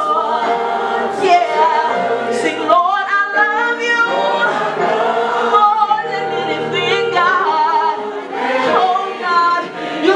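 Congregational gospel worship singing: a woman leads on a microphone and the congregation sings along, with continuous held and shifting notes.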